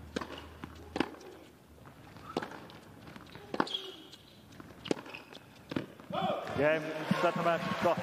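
Tennis rally: a serve, then racket strikes on the ball about a second apart, six in all. About six seconds in, a crowd breaks into loud cheering and applause as match point is won.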